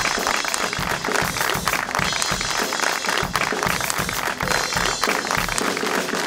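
Studio music playing over hand clapping that carries on throughout.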